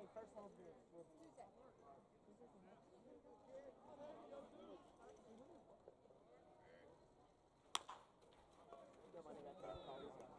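Faint crowd chatter in a ballpark, then a single sharp crack about three-quarters of the way through as a baseball bat hits a pitched ball.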